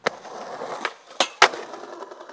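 Skateboard wheels rolling over concrete paving slabs, with sharp clacks of the board hitting the ground: one at the start and three more in quick succession in the middle, the last two the loudest.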